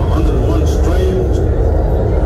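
Concert crowd chattering in a large hall over a loud, steady low rumble.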